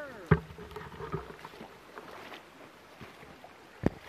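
Handling knocks on a hand-held 360 camera: one sharp knock about a third of a second in, a few softer taps, and another sharp knock near the end as a thumb comes over the lens. A short falling pitched sound trails off at the very start.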